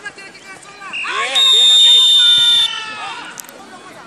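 A referee's whistle blown in one long, steady blast lasting just over a second, with players' voices shouting on the field around it.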